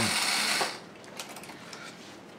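The battery-powered electric motor and gear drive of a vintage Sonicon Bus tin toy running steadily, cutting off suddenly about a third of a second in. After that come a few faint knocks as the toy is handled.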